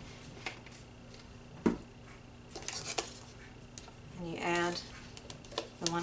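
Light clicks and knocks of plastic cups and a wooden stir stick being handled on a table while two parts of epoxy resin are combined, with one sharper knock nearly two seconds in.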